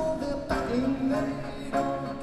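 Live rock band playing, with a male voice singing over electric guitar and the band.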